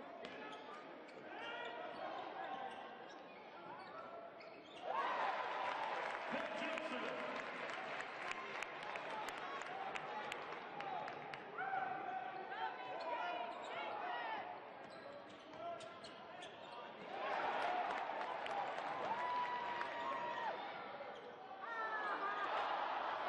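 Basketball game sound: a ball bouncing on the hardwood court amid crowd noise and voices. The crowd noise grows louder about five seconds in and again about seventeen seconds in.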